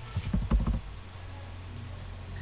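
Computer keyboard keystrokes, a quick run of key presses in the first second as a drawing command is typed in, over a steady low hum.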